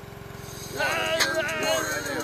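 Pressure washer running with a steady fast pulsing drone, its spray hissing as it blasts water. From just under a second in, a child's high-pitched voice yells over it.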